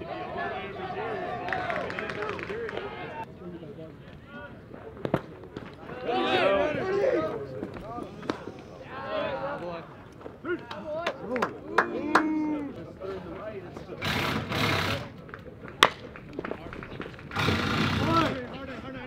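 Indistinct voices of baseball players and spectators shouting and calling out, with a few sharp knocks and two short bursts of noise near the end.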